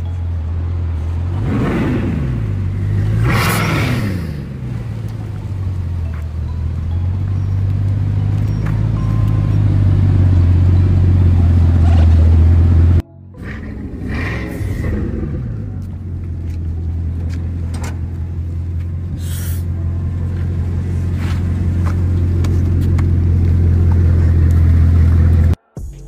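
Bugatti's W16 engine running with a steady deep drone, revved so its pitch sweeps up and down about two and three and a half seconds in, and again just after a cut about halfway through.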